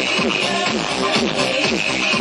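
Electric violins playing over a dance-music backing track with a steady beat, their notes repeatedly sliding up and down.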